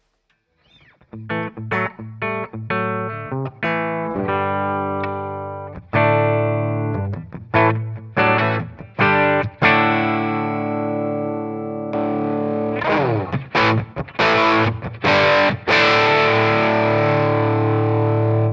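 Gibson SG electric guitar played through an amp, first clean, with picked chords and notes that ring out. About twelve seconds in, an overdrive pedal is switched on and strummed chords turn gritty and full.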